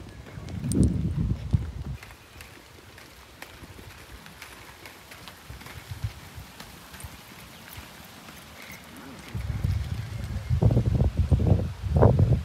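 Footsteps of sneakers on an asphalt path, heard close up as uneven low thumps for about the first two seconds. Then a quieter outdoor stretch with faint clicks, and from about nine seconds in a loud low rumble.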